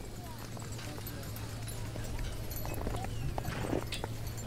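Steady background ambience of a busy street: distant crowd voices and a constant low hum with faint scattered clicks. Near the end comes a short sip from a hot drink.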